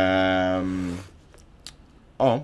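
A man's hesitant "ja..." drawn out on one steady pitch for about a second, then a quiet room with two faint clicks.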